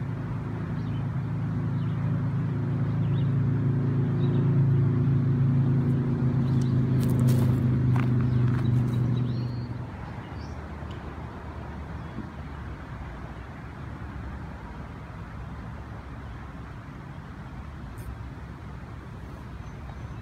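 A motor vehicle's engine running nearby as a steady low hum, growing louder and then stopping abruptly about ten seconds in; a quieter outdoor background remains.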